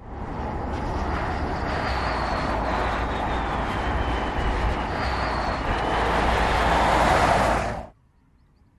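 Steady road noise of a car driving at speed: tyre roar on asphalt and wind rush with a low rumble, plus a faint high whine that glides slowly down in pitch. It begins and ends abruptly, growing a little louder near the end.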